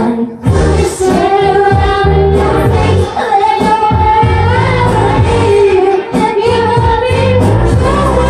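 Music with a singing voice: a sung melody with long held notes over a steady, loud bass line.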